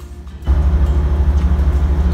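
Steady low rumble with a fast, even throb, typical of a ship's engine heard inside a cabin. It grows suddenly louder about half a second in.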